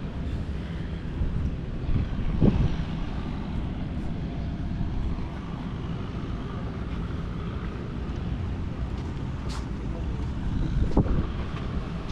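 Wind buffeting the microphone: a steady low rumble with two stronger gusts, about two and a half seconds in and again near the end.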